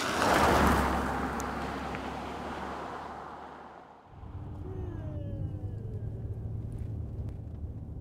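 A swell of rushing noise that fades over a few seconds. About four seconds in it gives way suddenly to the steady low rumble of engine and road noise heard from inside a moving car's cabin.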